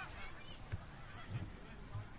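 Voices calling out across an open football ground, with three short, dull low thumps about half a second apart.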